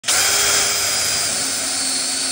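Cordless drill running steadily under load, boring a countersunk clearance hole into a block of dark hardwood with a tapered drill bit and countersink collar.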